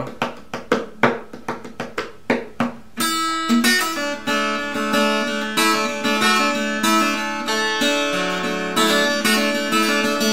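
Fingertips drumming about four times a second for the first three seconds, then an acoustic guitar in open D tuning fingerpicked in a steady three-finger pattern, with quick fretted notes alternated over sustained low notes.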